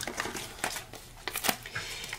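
Light rustling of paper and small craft pieces being handled, with a few short clicks and taps as a foam adhesive dimensional is picked up.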